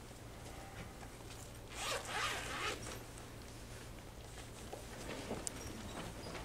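A brief rasping rustle of suit-jacket fabric, about a second long, a couple of seconds in, with a few faint ticks scattered around it.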